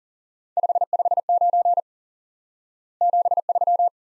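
Morse code sent at 40 words per minute as a single steady beep keyed in quick dots and dashes: two groups, '5 5 9' and then, after a pause of about a second, '7 3'.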